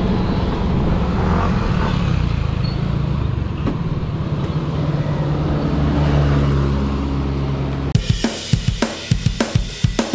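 Motorcycle engine running steadily at low speed or idle. About eight seconds in, it cuts off abruptly to music with a driving drum-kit beat.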